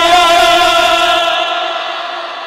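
A man's voice drawn out into one long, chant-like held cry through a microphone and loudspeakers, wavering slightly at first. It fades out about a second and a half in, leaving a dying echo.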